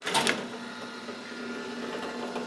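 Sound effect of a steel jail-cell door sliding shut: a sharp metallic clank as it starts, then a steady rolling, rattling run along its track.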